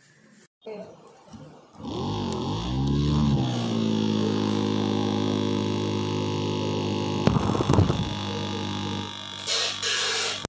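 Small DC motor running off a homemade six-cell carbon–carbon battery pack: it spins up about two seconds in with a wavering rise in pitch, then runs with a steady hum and stops about a second before the end.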